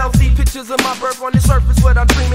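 Hip hop music: a rapped vocal over drums and a deep bass line whose notes slide downward in pitch.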